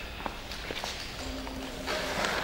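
Sneaker footsteps on a concrete floor in a large hall: a few light taps, with a faint low hum joining after the first second and a short rush of noise right at the end.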